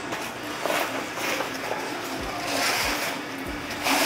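Music with a steady beat: low kick-drum thumps under a sustained melody, with lighter high percussion between them.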